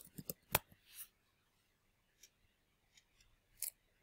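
Computer keyboard keys typed a few times in the first second, quick sharp clicks, followed by a few fainter clicks later on.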